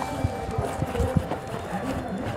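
Running footsteps of a triathlete through transition, quick regular thumps about three or four a second, over faint background music.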